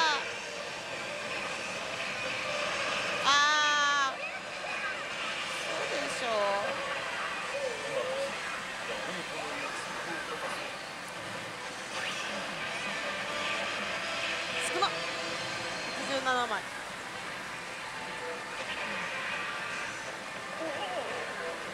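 Din of pachislot machines: layered steady electronic tones and effects, with short voice-like calls from the machines. The loudest call comes about three seconds in, and another near the end.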